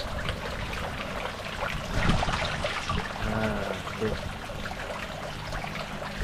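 Steady trickle of water pouring into a tarpaulin fish pond. Nile tilapia splash at the surface now and then as they snap up feed pellets.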